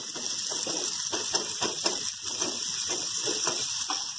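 Oil sizzling in a kadai as chana dal, red chillies, garlic and onion fry. A wooden spatula scrapes and stirs through them about three times a second.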